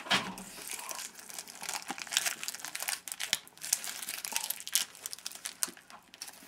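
A small wad of white paper being crinkled and crumpled close to the microphone: a dense, irregular run of crackles, loudest just at the start.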